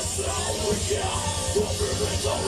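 Heavy metal band playing live: distorted electric guitars and fast drumming under shouted vocals.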